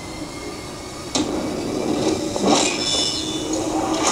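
Action film trailer soundtrack with no dialogue: a steady noisy rumble, a sudden hit about a second in, then louder noisy effects sound.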